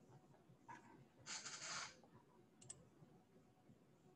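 Near silence with a few faint computer-mouse clicks and a soft, half-second hiss about a third of the way in.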